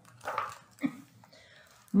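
A woman's two short coughs, the second a little over half a second after the first.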